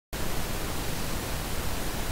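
Steady hiss of recording background noise, an even rushing with no distinct events or tones, cutting in abruptly right at the start.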